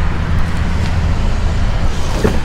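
Car engine idling with a steady low hum, over a haze of road-traffic noise.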